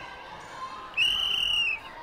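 A sports whistle blown in long, steady blasts of just under a second: one ends right at the start, and another sounds about a second in.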